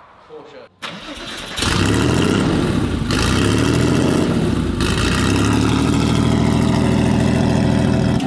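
Porsche 964's air-cooled flat-six starting about a second and a half in, then running steadily at idle, heard from behind the car near its exhausts.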